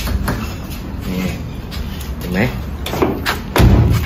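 Men talking in a workshop, with a couple of light knocks and a dull, heavy thump near the end.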